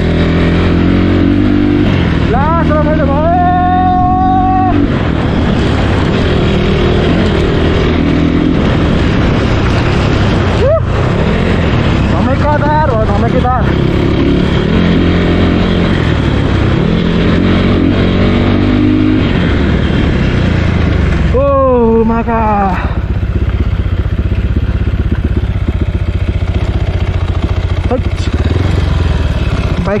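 Dirt bike engine running under way, its revs rising and falling, with a voice calling out briefly three times over it.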